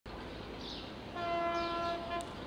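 Train horn sounding one steady single-pitched blast of about a second, starting about a second in. Birds give short high falling whistles around it.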